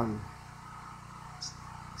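A spoken word trails off at the start, then a pause holding only faint steady low background hum, with one brief faint tick about one and a half seconds in.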